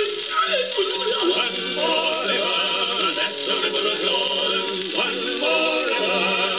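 An old Columbia gramophone record playing a musical interlude between sung verses, with wavering melody lines. The sound is narrow and lacks any top end, as an early disc recording does.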